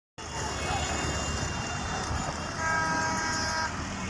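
A vehicle horn sounds one steady blast of about a second, a little past halfway through, over continuous street noise and scattered voices.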